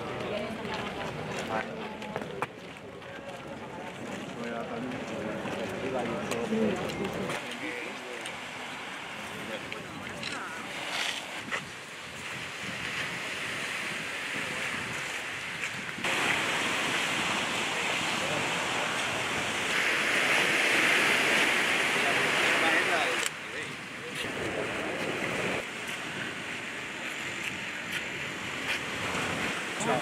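Sea waves washing onto a beach with wind, as a steady hiss of surf that jumps in level at a few points. It follows several seconds of indistinct chatter from a group of people.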